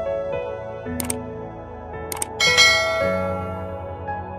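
Soft background music with a subscribe-button animation sound effect over it: a mouse click about a second in, another just after two seconds, then a bell chime that rings out and fades.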